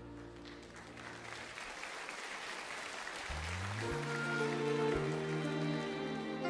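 Applause from the audience as a piece of music dies away. About three seconds in, the orchestra begins a new, slow piece: strings and low notes step upward and then hold long chords.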